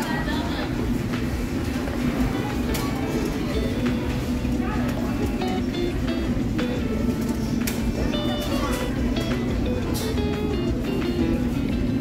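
Background music playing over the steady hubbub of chatter in a busy fast-food restaurant, with a few sharp clicks and clinks.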